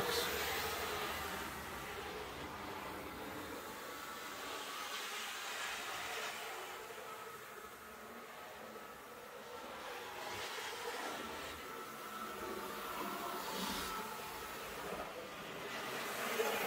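HO-scale IHC Premier dual-motor GG-1 model locomotive running on the layout track: a steady whir of its motors and gearing with the wheels on the rails. It swells and fades a little as the locomotive moves nearer and farther away.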